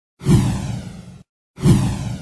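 Two whoosh sound effects from an animated title sequence. Each starts suddenly, sweeps down in pitch and fades; the first cuts off about a second in, and the second starts half a second later.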